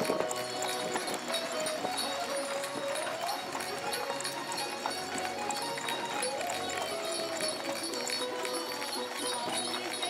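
A horse's hooves clip-clopping at a steady walk on a dirt road as it pulls a carriage, with music playing over it.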